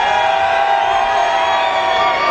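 Crowd cheering, with long held shouts and whoops.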